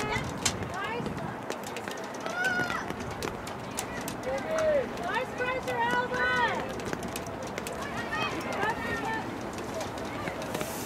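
Shouting voices calling out across a soccer field, high-pitched and with no clear words, in several separate calls a second or two apart, the longest run of them in the middle.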